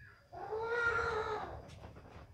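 A single drawn-out, high-pitched vocal call lasting about a second, gently rising and then falling in pitch.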